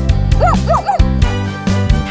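A cartoon puppy barks three short yips in quick succession, over children's background music with a steady beat.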